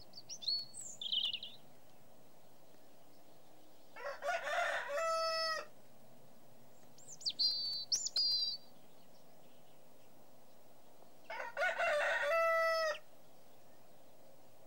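A rooster crowing twice, each crow about a second and a half long and ending on a held note, with small birds chirping high in between.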